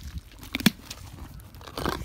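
Miniature donkey biting into a carrot held out by hand and crunching it, with one sharp snap a little over half a second in as the carrot breaks.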